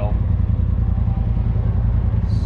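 Can-Am Maverick X3's turbocharged three-cylinder engine idling steadily with the vehicle stopped, a low, even rumble.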